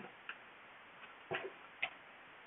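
A few light clicks and a knock from small makeup items being handled during a search for a lipstick, the loudest about a second and a half in.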